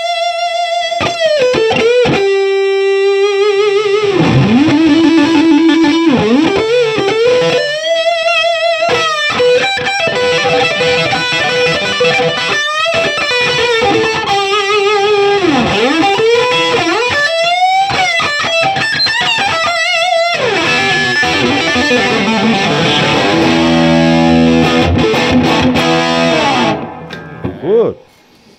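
Sterling by Music Man LK100 electric guitar played through a Marshall JCM2000 amp with the gain turned up to 8: a distorted lead line of single notes with many string bends and wide vibrato on held notes. Near the end it drops to lower notes, then stops about a second before the end.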